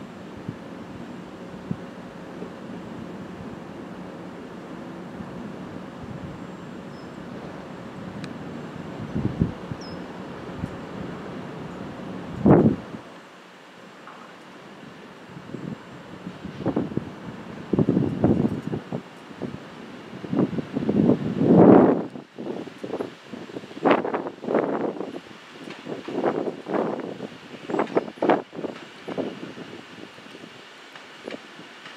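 Class 390 Pendolino electric multiple unit coming in slowly over the points, a steady low rumble with a faint hum. A single sharp thump comes about twelve seconds in. From about sixteen seconds on there are irregular bursts of noise, some quite loud, of the kind wind gusting on the microphone makes.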